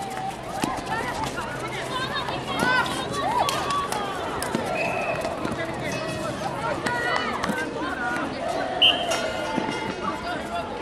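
Players' voices calling out across an outdoor netball court, with two short blasts of the umpire's whistle: a softer one about five seconds in and a louder, sharper one near the end.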